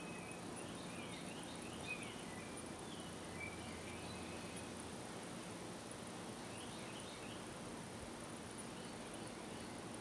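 Faint outdoor woodland ambience: distant birds giving short chirps several times, over a steady high-pitched insect drone.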